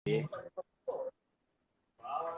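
A man's voice making a few short pitched sounds in the first second, then the audio drops out abruptly to dead silence.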